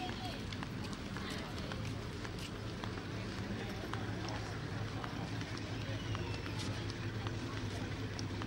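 Outdoor ambience: faint footsteps and distant voices over a steady low hum and noise.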